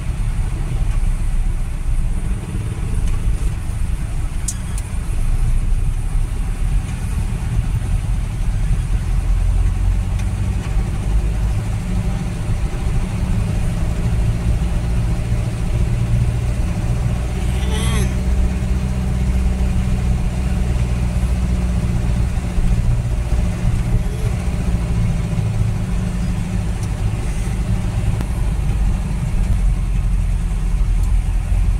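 Vehicle engine and road noise heard from inside the cabin while driving, a steady low rumble. A brief higher-pitched wavering sound comes about eighteen seconds in.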